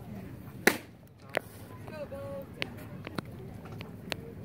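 A single sharp smack about a second in, followed by a few fainter clicks, over faint background chatter at a ballfield.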